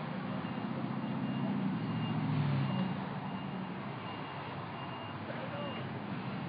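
A truck's engine running, swelling and easing off about halfway through, with its reversing alarm beeping in a steady on-off pattern.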